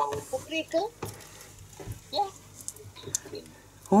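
Faint voices of several people chatting over a video call, heard through a device speaker turned down low, with a few soft clicks.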